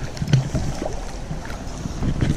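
Water splashing as a large hooked trout thrashes at the surface while it is played in close, with wind rumbling on the microphone. There is a single thump about a third of a second in.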